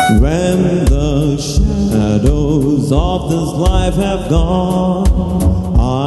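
A man singing into a handheld microphone over band accompaniment with a steady beat.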